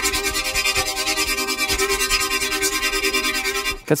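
Xfer Serum software synthesizer playing one held note from a wavetable made out of an imported Homer Simpson image, in oscillator A. The note pulses with a fast, even flutter of about six beats a second, the quick stutter that the patch's LFOs add.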